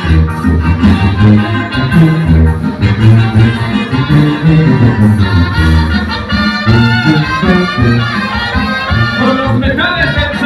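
An amplified live band playing upbeat Latin American dance music, with brass carrying the tune over a strong, steady bass beat.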